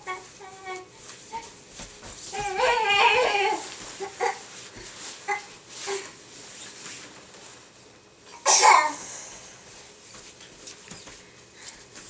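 A baby babbling and squealing, with a long wavering vocal run about two and a half seconds in and scattered short sounds after it. The loudest moment is a short, breathy, high outburst at about eight and a half seconds.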